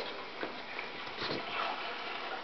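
Two terriers play-fighting, a Patterdale and a Staffordshire bull terrier: faint scuffling with soft dog noises.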